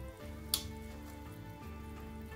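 Soft background music with held notes over the faint sizzle of duck breasts frying in bubbling teriyaki sauce in a cast-iron skillet. A single sharp click about half a second in.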